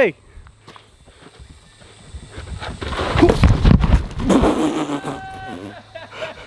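A person slipping and falling on a steep, loose dirt slope: feet scuffing and sliding, then the body hitting the ground, about three to four and a half seconds in. A short vocal sound follows near the end.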